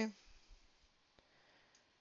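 Quiet room tone with a single faint click about a second in, a computer mouse button.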